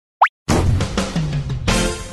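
Animated intro jingle: a short, quick rising pop, then music with percussive hits that starts about half a second in and hits again near the end.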